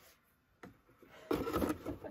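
A second of near quiet, then a short burst of rustling and handling noise about a second and a half in, as objects such as a cap are picked up and moved among cardboard boxes.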